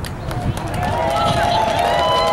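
Several voices holding a long, slightly wavering high note together, starting about half a second in, over crowd murmur.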